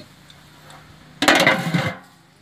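A short, loud burst of metal cookware clattering, lasting under a second and starting just past the halfway point.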